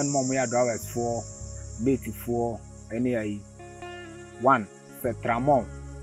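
A voice talking over quiet background music with a steady bass line. A high, steady insect chirring runs underneath, loudest in the first couple of seconds.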